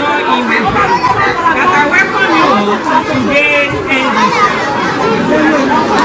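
Several people talking at once: a steady chatter of overlapping voices.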